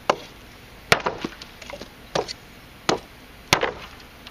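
Large handmade chopper knife blade chopping into a small-diameter dry hardwood branch laid on a wooden block: a series of sharp woody chops, roughly one a second, the last the loudest.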